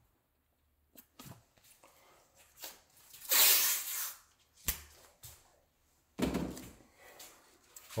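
Handling noises: scattered clicks and knocks, with a loud rasping hiss lasting about a second, about three seconds in, and a shorter one about six seconds in.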